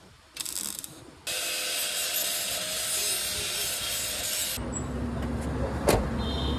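Welding on a truck's rusted lower cab panel: a short crackling burst about half a second in, then a steady crackling hiss for about three seconds. Near the end a lower rumble takes over.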